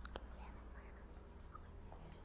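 Faint, low voice over a steady low hum, with two sharp clicks right at the start.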